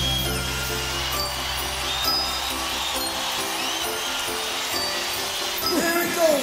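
A live rock band holds a final chord that dies away over the first two or three seconds. Under it, an arena crowd cheers, with several whistles rising and falling above the noise.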